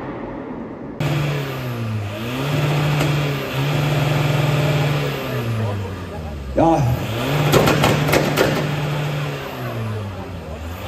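Volkswagen Polo's engine revved hard over and over, holding high revs between quick dips as it spins its tyres in a smoky burnout. In the second half the crowd shouts over it and a string of sharp cracks rings out.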